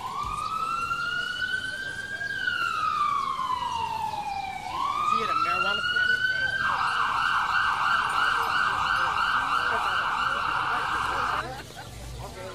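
Ambulance siren: a slow wail that rises, falls and rises again, then switches to a fast warble for about five seconds and cuts off near the end.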